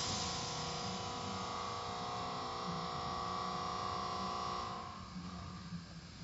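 Automatic car wash machinery running: a steady motor whine of several fixed tones over a hiss, which dies away about five seconds in.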